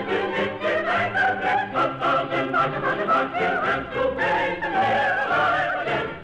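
Light-opera singing with orchestra: voices holding sung notes with vibrato over the orchestral accompaniment. The sound is narrow and muffled, like an old 1940s radio transcription recording.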